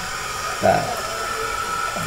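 A steady hiss, with a brief faint voice about half a second in.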